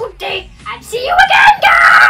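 A child's high voice shouting and screaming, loudest and most sustained in the second half.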